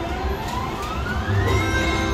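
Electronic sound effect from an Ultimate Screaming Links slot machine during a free-spin bonus spin: a rising tone that climbs steadily for about a second and a half, then holds at a high pitch. Casino machine tones and hum continue underneath.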